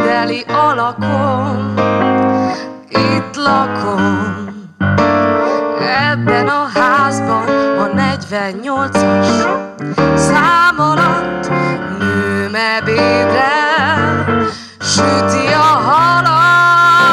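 A woman singing a slow song into a microphone over instrumental accompaniment, her long held notes wavering.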